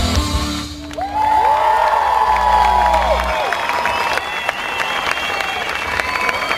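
The last chord of a rock song played by a band with a symphony orchestra ends under a second in. Audience applause and cheering follow.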